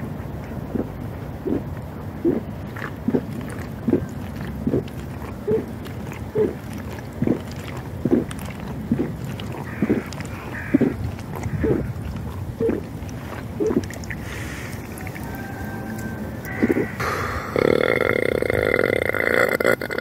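A man gulping an energy drink from a can in long continuous swallows, a gulp just under every second for about thirteen seconds. Near the end comes a louder drawn-out sound.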